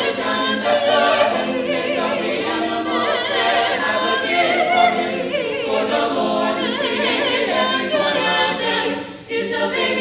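A mixed high school choir of male and female voices singing in harmony, with held notes moving from chord to chord and a short break between phrases near the end.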